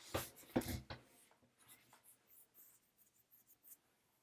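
Handling noise: scratchy rubbing and rustling close to the microphone, a few louder scrapes in the first second, then faint scattered scuffs.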